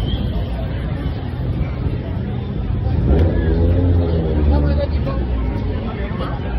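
Busy street ambience: crowd chatter and passing car traffic. A low engine rumble swells about three seconds in and is the loudest sound.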